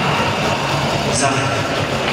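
Speech only: a man announcing in Czech over a sports hall's public-address system, with a steady background of hall noise.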